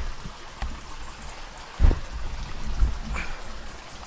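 Low, uneven rumble of a handheld camera being moved about against its microphone, with a single thump about two seconds in.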